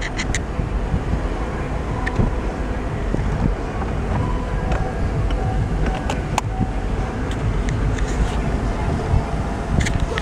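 A car's power-operated convertible roof folding back: a steady mechanical hum over the running engine, with a few sharp clicks about six seconds in as the roof panels move.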